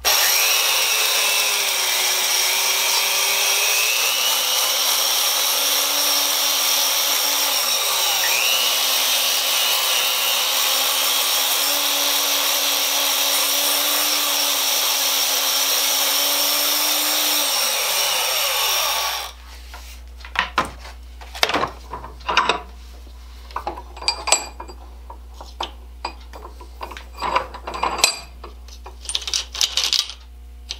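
Handheld belt file (power file) running and grinding the cut end of a steel carriage bolt clamped in a vise, dressing the edges so a nut will thread on. The motor pitch dips briefly under load a few times, and the tool winds down after about 19 seconds. Light clicks and taps follow as the bolt is handled.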